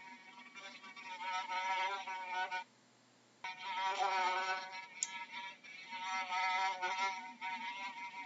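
A fly buzzing in flight, its drone wavering up and down in pitch as it moves about. The buzz cuts out for under a second about three seconds in.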